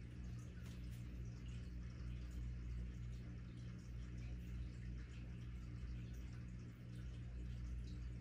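Quiet room tone: a steady low hum with a faint hiss, and no distinct events.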